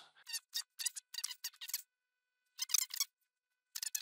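Light, quick clicks from a desktop computer's keyboard and mouse, in bursts: a run of them through the first two seconds, a few more near three seconds and again at the end.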